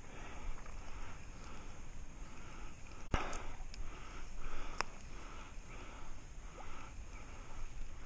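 Spinning reel being cranked during a spinner retrieve, a faint rhythmic whirr about one and a half turns a second, over creek water running past the wader. A sharp click comes about three seconds in.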